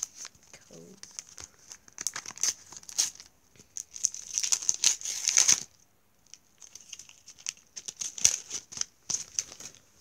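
Foil sticker packet being crinkled and torn open, with the stickers inside rustling. The crinkling comes in short bursts, with a longer, louder stretch about four to five and a half seconds in.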